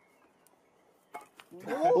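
Near quiet for about a second, then two short knocks as a man tumbles forward off a pair of metal parallettes onto the forest floor in a failed attempt. A man's loud exclamation follows near the end.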